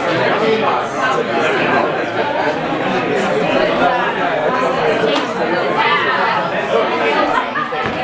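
Many people talking at once in a large room: overlapping crowd chatter with no single voice standing out.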